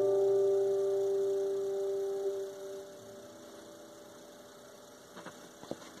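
Acoustic guitar's last chord ringing out and fading away over about three seconds, then a few faint knocks near the end.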